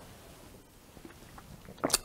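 Near-quiet room tone while a man drinks from a glass mug, with a brief sharp sound near the end.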